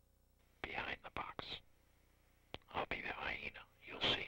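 A person whispering: two short whispered phrases, each about a second long.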